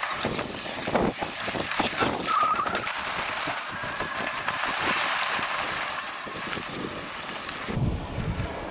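Cyrusher Ranger fat-tyre e-bike riding through long grass on a rough field-edge track: a steady rustling swish of grass brushing the tyres and bike, broken by many small clicks and knocks from the bumpy ground.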